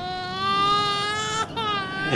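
A man's high-pitched, drawn-out vocal cry, held on one steady note for about a second and a half, then a shorter second cry right after.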